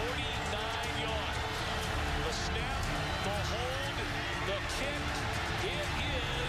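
Football stadium crowd noise: a steady din of many voices and shouts, with sustained low musical tones underneath.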